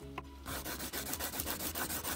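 Colored pencil scribbling on lined notebook paper: quick back-and-forth shading strokes, starting about half a second in.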